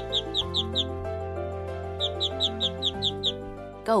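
Newly hatched cartoon ducklings peeping: two quick runs of about eight short high chirps each, over gentle background music with held notes.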